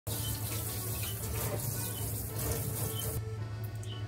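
Water running from a kitchen tap into a stainless steel sink, shut off about three seconds in.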